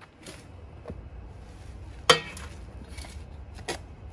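Metal shovel working soil: a few knocks and scrapes of the blade, with one sharp ringing metal clank about halfway through and a smaller one near the end.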